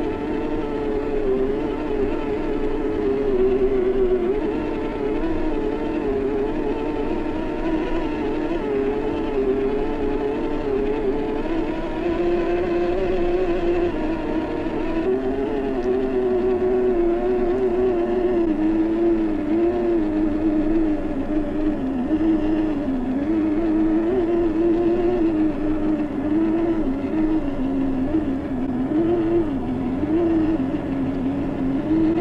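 Electric motor and gear drive of a Traxxas TRX-4 RC crawler whining as it climbs, the pitch wavering up and down continuously with the throttle.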